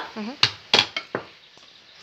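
Cutlery clicking against plates three times as food is served.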